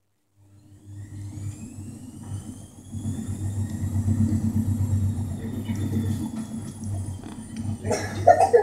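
A steady low mechanical hum that starts suddenly out of silence, with a thin high whine above it that rises slowly and then gently falls in pitch.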